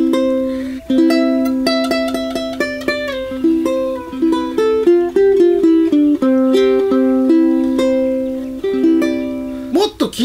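Aostin AT100 tenor ukulele strung with fluorocarbon fishing-line strings, played as a short melodic phrase of plucked notes ringing over a sustained low note. It stops just before the end.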